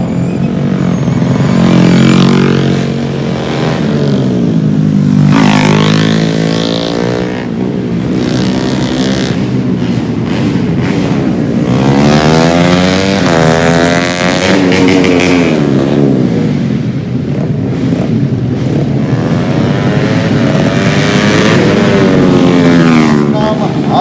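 Yamaha Jupiter underbone race motorcycles with small single-cylinder four-stroke engines, revved hard as they ride past. The pitch rises and falls over and over with throttle, gear changes and each pass.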